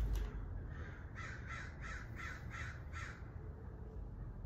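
A bird calling: a quick, evenly spaced run of about six calls, roughly three a second, between about one and three seconds in.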